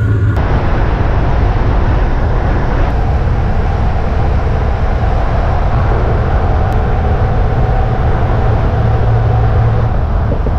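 Steady road and engine noise of a van driving on a highway, with a deep low rumble.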